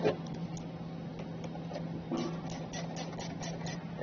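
Ratchet and 10 mm socket clicking in a run of light ticks, about four to five a second, as the nut is tightened down on the car battery's positive terminal post. A single knock comes right at the start.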